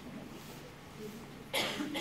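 A single short cough from someone in the room about one and a half seconds in, over a low murmur of voices.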